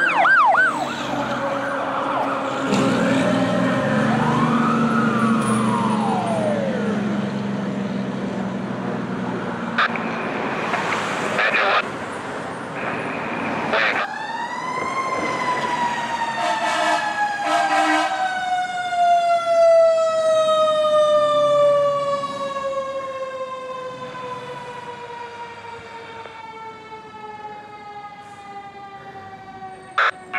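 Fire apparatus sirens: a siren rising and falling in pitch over a low diesel engine rumble as the fire engine passes. About 14 seconds in, a mechanical siren spins up sharply, then slowly winds down, falling steadily in pitch and fading.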